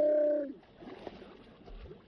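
A person's short held cry that cuts off about half a second in, followed by quieter splashing of water against the boat.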